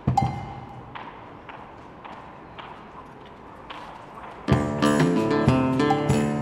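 A short knock, then a few seconds of quiet room sound with faint clicks. About four and a half seconds in, the song starts with guitar notes played in plucked rhythmic attacks.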